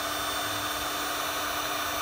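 Electric heat gun running steadily, blowing hot air onto a heat-shrink butt connector to shrink and seal a wire splice. It makes an even rush of air with a constant low hum.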